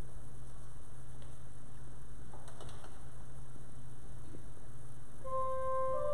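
A steady low hum, then, about five seconds in, a single held organ note begins: the opening of the introit.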